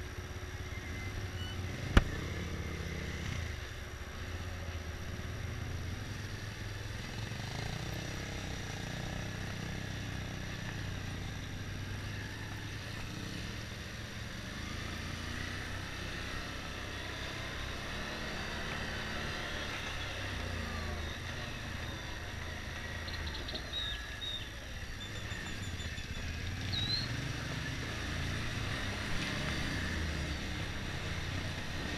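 Motorcycle engine running as it is ridden slowly, its pitch rising and falling with the throttle. A single sharp knock comes about two seconds in.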